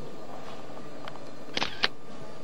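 Camera shutter sound: two sharp clicks about a quarter second apart near the end, over a steady hiss.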